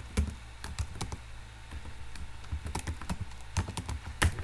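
Computer keyboard typing: irregular keystrokes, with a short lull in the middle.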